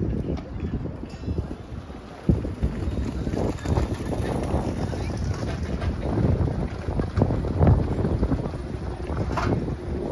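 Wind buffeting the microphone in gusts, a low uneven rumble, with faint voices of people around.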